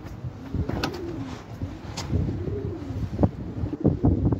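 A bird calling in two low, rising-and-falling notes, with a few sharp clicks or knocks in between.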